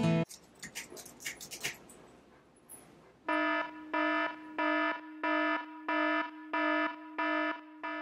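An electronic alarm beeps in an even rhythm, about eight identical pitched beeps a little over half a second apart, starting about three seconds in. Before it, guitar music cuts off right at the start, and then there are a few faint ticks.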